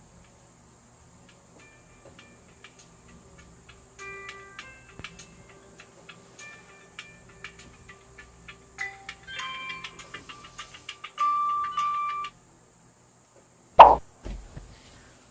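Smartphone playing a melodic chime tone, soft at first and growing louder, until it is silenced about twelve seconds in. A single loud thump follows near the end.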